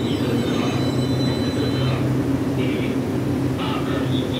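Taiwan Railways EMU800-series electric multiple unit standing at the platform, giving a steady low electrical hum, with a faint high whine in the first couple of seconds.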